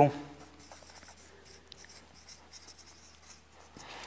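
Marker pen writing on a whiteboard: faint, short scratching strokes as a word is written out.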